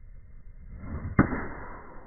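Swish of a 3 iron swinging down through the air, building up, then a single sharp click as the clubface strikes the golf ball a little past a second in.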